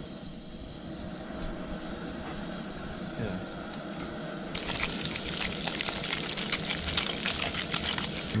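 Fish pieces frying in butter in a frying pan: a soft, steady sizzle that about four and a half seconds in turns into a louder, dense crackling sizzle.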